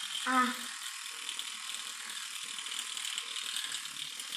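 Battery-powered children's electric toothbrush running while brushing a child's teeth, with a steady rattle; its battery is run down, and it sounds like a tractor.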